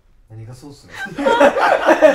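Men laughing: a soft chuckle starts a moment in, then grows into loud laughter in quick repeated bursts from about a second in.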